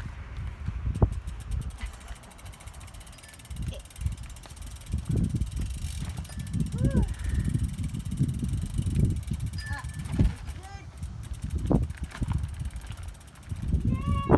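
Uneven low rumble of wind and handling noise on a phone microphone as a loaded bikepacking bicycle is walked along. Faint fast ticking, like a freewheel hub coasting, comes and goes, near the start and again around ten seconds in.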